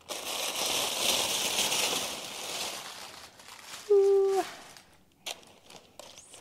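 Tissue paper crinkling and rustling as it is pulled back from a packed bag for about three seconds. It is followed by a short steady hummed note about four seconds in and a sharp click near the end.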